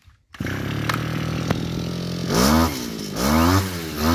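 Hitachi CG33 brush cutter's two-stroke engine running steadily, then revved up and let back down twice with the throttle near the end.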